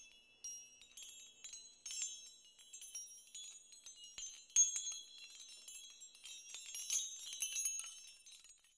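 High, glassy tinkling of many small chimes, one quick strike over another in a shimmering cluster that thins out near the end.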